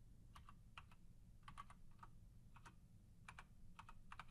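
Faint keystrokes on a computer keyboard, about a dozen irregularly spaced taps in small clusters: a password being typed at a sudo prompt.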